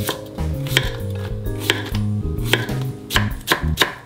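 Chef's knife slicing a cucumber into thin strips on an end-grain wooden cutting board: a string of sharp knife taps on the wood, coming faster near the end.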